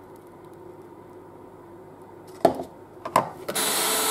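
A couple of sharp knocks, then near the end an electric hand mixer switches on. Its motor runs loud and steady with a whine as the beaters churn the egg, sugar and oil batter.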